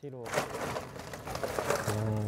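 Paper bag rustling and crinkling in a dense run of crackles as someone rummages in it, with voices talking over it at the start and near the end.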